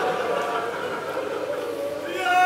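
Mourning congregation weeping and wailing, a low, steady sound of many voices during a pause in a lamentation sermon.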